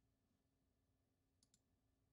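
Near silence: a gap of digital quiet with only a very faint hum.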